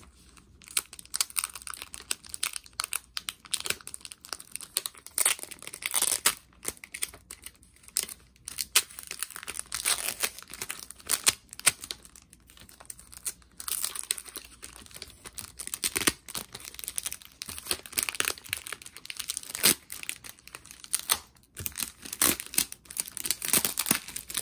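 Thin clear plastic around a vinyl LP jacket crinkling and crackling in irregular short bursts as fingers peel a sticker off it and pull the plastic open.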